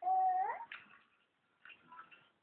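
A 10-month-old baby's drawn-out vocal cry, about half a second long, held on one pitch and then rising at the end. A short fainter vocal sound follows, then faint babble near the end.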